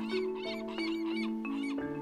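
Soft background music of held notes, with a quick run of small high chirps in the first second: cartoon bird calls.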